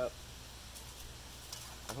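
Quiet outdoor background with a steady low hum and faint hiss between a man's words, broken by two very faint light ticks.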